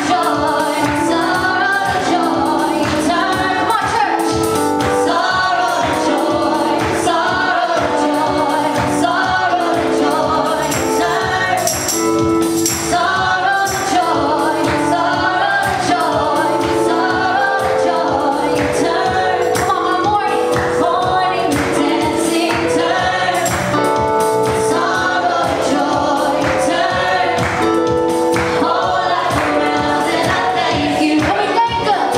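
A worship team of four women singing a gospel song together into microphones, over an accompaniment with a steady beat.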